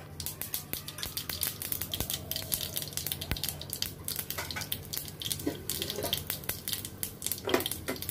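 Whole black mustard seeds frying in hot mustard oil in a kadai, a steady sizzle full of tiny crackles as the tempering seeds start to splutter.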